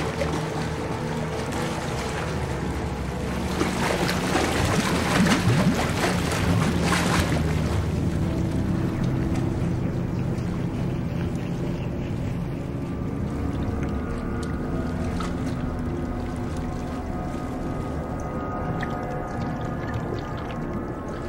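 Water churning and splashing in a tank, loudest a few seconds in, over a film music score whose held tones carry on after the splashing fades.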